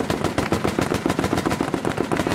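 A pickup-mounted machine gun firing a long continuous burst: rapid automatic shots, about a dozen a second.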